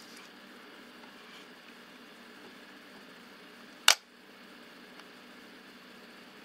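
A single sharp mechanical click from the SLR 1 35 mm camera body about four seconds in, over faint room noise. The camera's shutter and mirror mechanism is not working properly.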